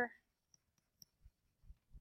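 A few faint clicks and soft taps of a stylus writing on a tablet screen, two small sharp clicks about half a second and a second in, then softer low taps.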